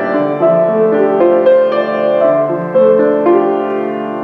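Solo grand piano playing a melody over held chords, new notes struck about every half second with the earlier ones ringing on.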